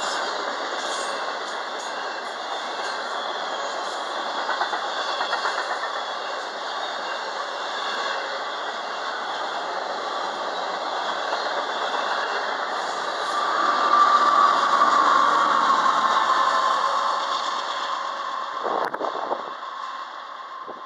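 Intermodal freight cars loaded with trailers rolling past at speed: a steady roar and rattle of steel wheels on rail. In the second half it grows louder, with a ringing tone rising over it. The roar cuts off sharply near the end.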